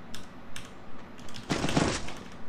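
Video-game gunfire: a few single sharp shots, then a rapid burst about one and a half seconds in.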